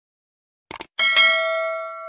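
Subscribe-button animation sound effects: a quick double mouse click about a third of the way in, then a notification-bell ding struck twice in quick succession that rings on and slowly fades.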